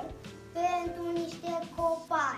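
A child singing a short phrase of held notes.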